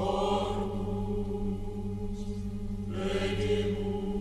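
Background music: a steady, droning chant-like track of held low tones, with a brighter swell at the start and another about three seconds in.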